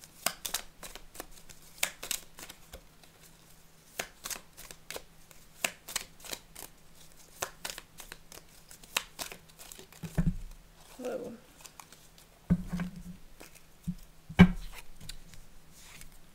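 Small mini tarot deck (Tarot of Pagan Cats) being shuffled by hand: a steady run of quick, sharp card clicks and flicks. In the second half come a few duller thuds as the deck or a card meets the cloth-covered table.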